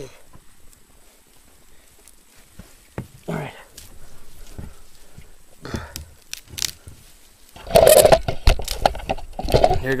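Hatchet chopping dead branches: a handful of separate sharp knocks and cracks of wood. Near the end there is a much louder burst of rustling, handling noise.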